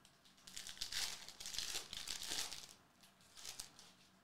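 Foil trading-card pack wrapper being torn open and crinkled by hand, with about two seconds of crackling and then a shorter crinkle near the end as the cards come out.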